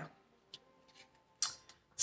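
A few faint, sparse clicks from a deck of tarot cards being handled, the loudest a short click about one and a half seconds in.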